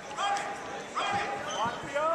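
High voices calling out in a gym, with a couple of dull thumps a little after a second in.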